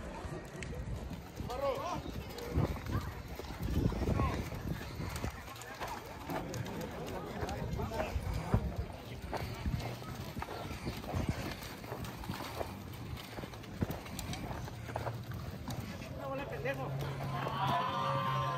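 Racehorses' hooves stepping and prancing on a dirt track, a run of irregular hoof thuds as the horses are led and ponied, with people's voices in the background.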